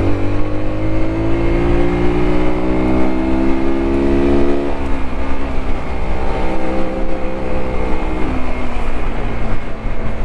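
Sinnis Terrain 125's single-cylinder engine under way on a dirt lane, rising steadily in pitch as the bike accelerates. About five seconds in the revs drop sharply, then it runs on at lower, slowly falling revs.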